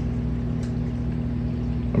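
Steady low hum of reef aquarium pumps running, with a soft even hiss over it.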